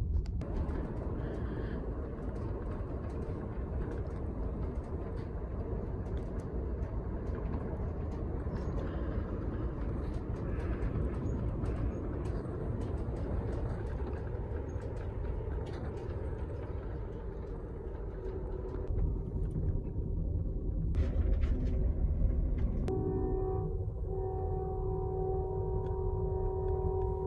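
Steady low rumble and rattle of the Amtrak California Zephyr running, heard from inside its sleeping car. Near the end, steady tones at several pitches held together sound for a few seconds.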